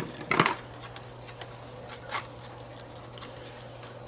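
Palette knife mixing white and black acrylic paint in a palette tray: faint scattered taps and scrapes, with one brief louder clack about half a second in. A steady low electrical hum runs underneath.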